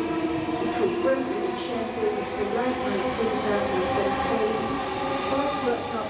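Class 315 electric multiple unit moving through the platform: a steady run of traction and wheel-on-rail noise with a hum of several held tones.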